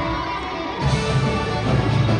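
Show choir performance music: many voices singing over loud accompaniment with a heavy low beat, which thins out briefly and comes back in strongly a little under a second in.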